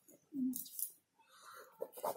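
Pen scratching on notebook paper in short strokes as words are written. A brief low, hooting call sounds about half a second in.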